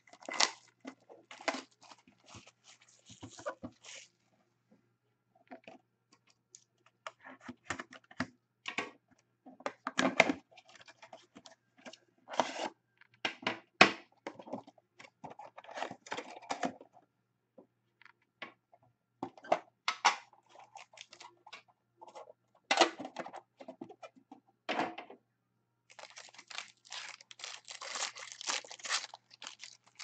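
A sealed trading-card box being opened and handled: scattered knocks, taps and scrapes of cardboard and a tin being moved. Near the end come a few seconds of steady tearing and crinkling of wrapper.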